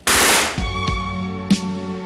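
Film gunfire from a scoped assault rifle: a loud burst about half a second long at the start, then one sharp shot about a second and a half in, over sustained orchestral music.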